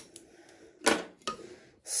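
Small handling noises of tape and scissors being worked at a metal tin: a click at the start, a sharper snap about a second in and a lighter click just after.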